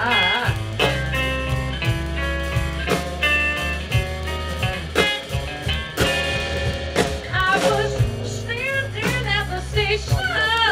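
A live blues band playing an instrumental stretch: electric guitar over electric bass and drums, with a heavy beat about once a second.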